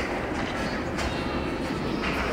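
Ice hockey game sound in an arena: a steady rumbling rink noise with two sharp clacks, one at the start and one about a second in.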